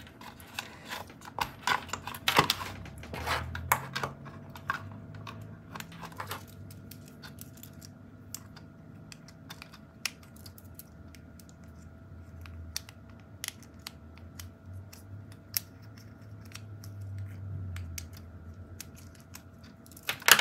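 Scattered small plastic clicks and taps of fischertechnik wire plugs, a push button and a motor being handled and unplugged from the interface. The clicks come thick for the first six seconds or so, then sparser, over a faint steady tone.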